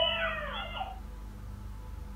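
Toddlers' high, gliding voices heard through a baby monitor, stopping about a second in and leaving the monitor's low steady hum.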